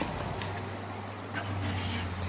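Metal kitchen tongs clicking faintly twice as grilled ribs are lifted off a charcoal grill grate into a plastic tub, over a steady low hum.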